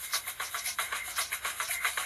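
Start of the radio show's opening theme music: a fast, even shaker-like percussion rhythm of about six or seven strokes a second.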